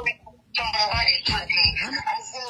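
Speech coming through a phone line, with a caller's radio playing the stream back and a steady high-pitched tone behind it; the words are not made out. It starts after a short near-silent gap about half a second in.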